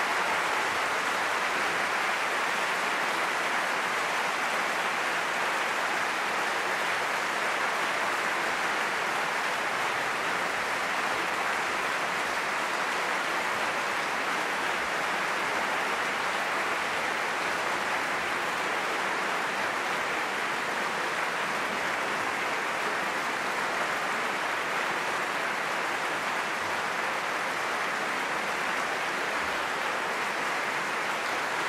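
Large concert-hall audience applauding steadily, with no music playing.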